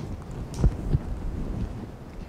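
Clip-on lapel microphone picking up clothing rustle and a few low thumps of footsteps as the wearer walks, the loudest just under a second in.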